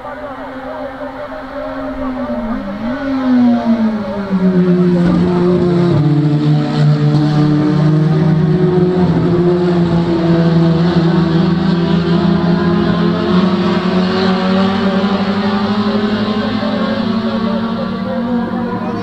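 Touring race car engines running hard at high revs, their pitch dropping about three seconds in and then holding steady as the pack keeps going, getting louder about four seconds in. Heard through an AM radio broadcast.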